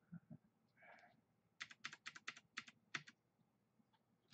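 Faint computer keyboard keystrokes: a quick run of about nine taps over a second and a half, starting about a second and a half in, with a couple of soft low knocks near the start.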